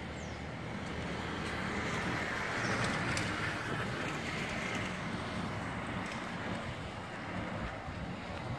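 Road traffic noise, with a vehicle passing that swells to its loudest about three seconds in and then settles into a steady hum.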